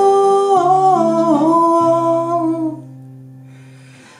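A man humming a long wordless melody line that steps and slides down in pitch, over chords on a steel-string acoustic guitar. A little under three seconds in, the voice stops and the guitar chord rings out and fades.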